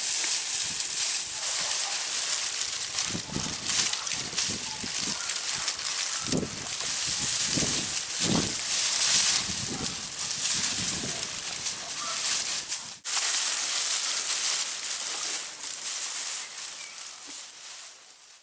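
Cattle pulling at and chewing dried tree hay, leafy branches cut mainly from ash and elm: a steady rustling and crackling of dry leaves and twigs, with a brief break about 13 seconds in.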